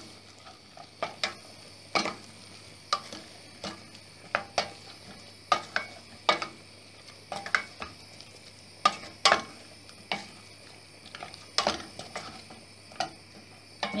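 A wooden spoon stirring chopped tomatoes in a stainless steel pot, knocking and scraping against the metal in irregular strokes about once or twice a second, over a faint sizzle of frying.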